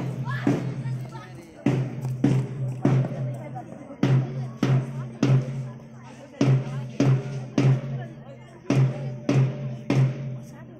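Drums beating a march rhythm: three strikes about half a second apart, then a one-beat rest, repeating steadily.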